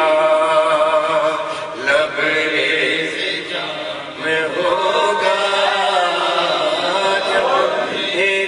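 Men's voices chanting an Urdu devotional poem in a slow melodic recitation, with long held, wavering notes and no instruments.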